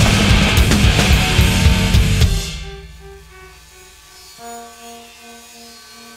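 Loud, heavy rock band music that breaks off about two seconds in to a quiet passage of a few sparse, then held, notes.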